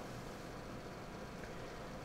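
Faint steady hiss with a low hum: room tone between words.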